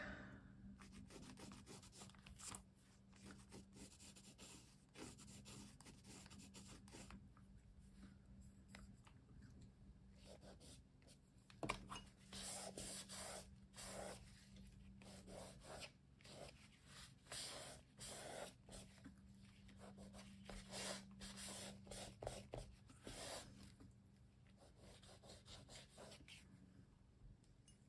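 Faint rubbing and scratching on paper. A charcoal pencil draws lines, then fingertips smudge the charcoal lines in a run of short rubbing strokes, busiest in the second half.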